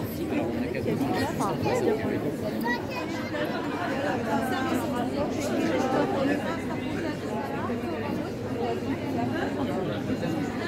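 Crowd chatter: many people talking at once, a steady babble of overlapping voices with no single speaker standing out.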